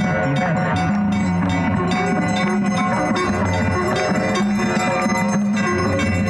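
Hindu devotional aarti music, steady and loud, with bells struck again and again throughout.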